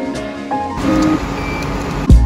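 Background music, which gives way about a second in to the car's own cabin noise with a short high beep, from the card reader of a parking-garage entry gate.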